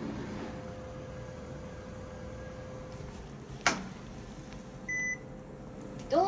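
Short electronic beep from an elevator's room-key card reader as a hotel key card is held to it, near the end. A single sharp knock comes a second or so earlier, over a faint steady hum.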